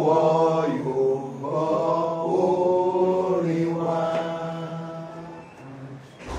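Voices singing a slow, unaccompanied chant. Long held notes glide between pitches over a steady lower sustained note, and the singing fades toward the end.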